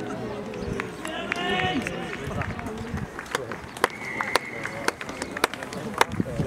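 Shouting voices on a rugby field during open play, with sharp knocks and a steady high tone about a second long near the middle.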